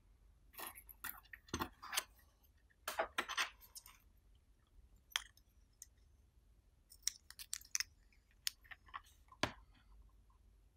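Small electronic kit parts being handled by hand: scattered light clicks and rustles from the transformer's wire leads, the circuit board and the heat-sinked transistor. They come in two bursts, the first starting about half a second in and the second about seven seconds in.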